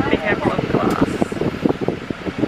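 Steady rush of a bus's air-conditioning fan inside the cabin, with voices talking over it.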